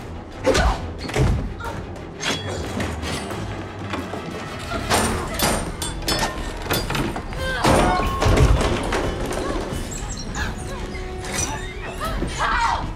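Horror-film fight soundtrack: a tense score under repeated heavy thuds and blows of a struggle, with a woman's cries and gasps.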